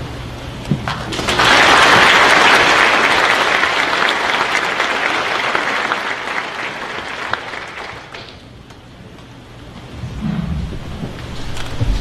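Audience applauding. The clapping starts about a second in, is loudest for the next few seconds and fades out around eight seconds.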